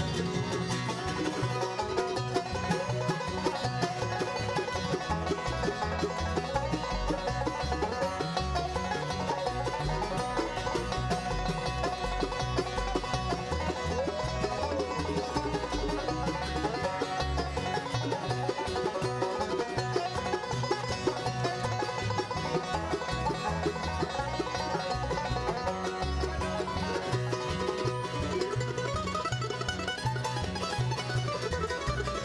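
Bluegrass band playing a boogie-woogie tune live on acoustic guitar, banjo, mandolin and upright bass, with a steady pulsing bass line under the picked strings.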